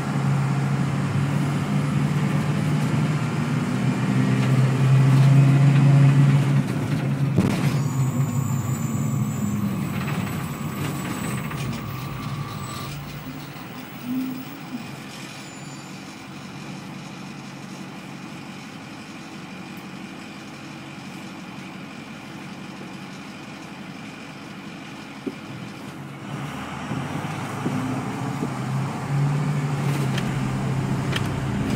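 Bus engine running with a steady low drone, loudest in the first several seconds and again near the end, quieter in between. A sudden sharp sound about seven seconds in, followed by a thin steady whine for a few seconds.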